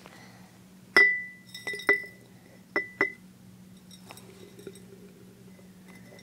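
Glass jar clinking: about five sharp taps between one and three seconds in, each leaving a short ringing note. Fainter ticks follow.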